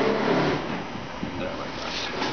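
Fibreglass batt insulation rustling as it is pressed and tucked into a wall cavity by hand. A man's voice is heard briefly at the start.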